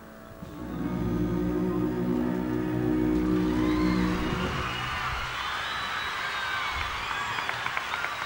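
A live band holds a sustained final chord, closing a ballad. From about three seconds in, an arena audience cheers and screams over it, and clapping starts near the end.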